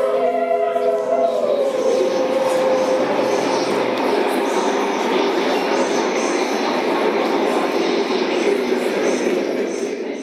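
Electronic performance soundscape: a few held tones for the first couple of seconds give way to a dense, steady rushing noise texture.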